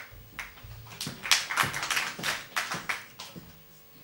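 A string of about ten irregular, sharp taps over three seconds, dying away near the end.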